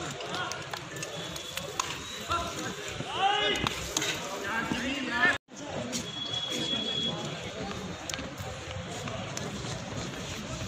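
Outdoor field hockey match ambience: players and onlookers shouting and calling, with scattered sharp knocks of stick and ball. After the sound cuts out for an instant about halfway through, a single steady umpire's whistle blast of about a second follows.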